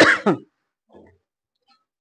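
A woman coughing and clearing her throat, stopping about half a second in.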